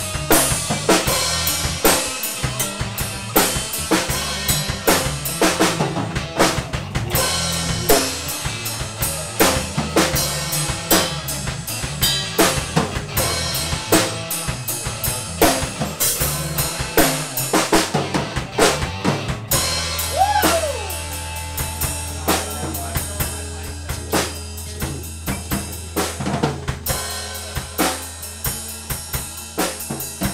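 Live rock band playing without vocals: a drum kit driving the beat with bass drum and snare, under electric guitar and electric bass. About two-thirds of the way in the drumming thins out and a low note is held steady under the guitar.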